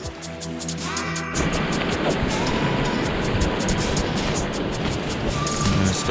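Background music, then from about a second and a half in, the loud, steady rush of a shallow mountain stream running over rocks, with the music continuing faintly underneath.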